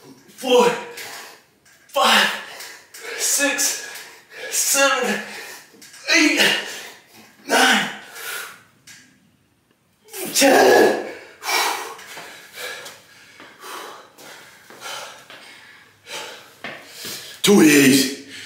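A man's forceful grunted exhales, one with each pull-up rep, in a steady rhythm of about one a second with a short pause a little past halfway.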